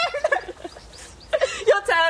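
Women's high-pitched laughter and squeals in short bursts, one near the start and more in the second half.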